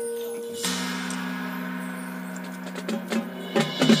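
High school marching band playing: a sustained low chord enters about half a second in, then a few percussion hits near the end swell into the loud full band.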